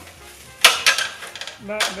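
Aluminium stepladder being handled: a sharp metal clank a little over half a second in, then a second, lighter clank just after.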